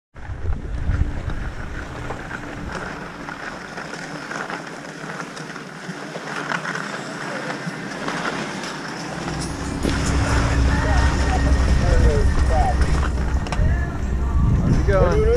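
Skis sliding and scraping over packed snow, a steady hiss, with a low rumble of wind on the microphone getting louder in the second half.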